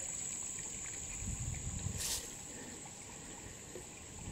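Faint trickle of shallow runoff water flowing along a muddy wheel rut, under a steady high-pitched insect drone. A low rumble comes about a second in, and a sharp click about two seconds in.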